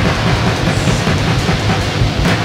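Loud punk and stoner rock music: a full band with guitar and a steady beat.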